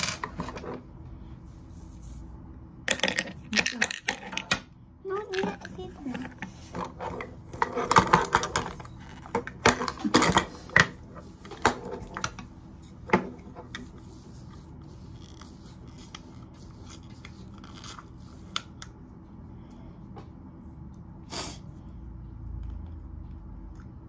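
Small plastic toy packaging being handled and unwrapped, with a busy run of clicks and rustles in the first half that thins to a few isolated clicks, and soft children's voices among them.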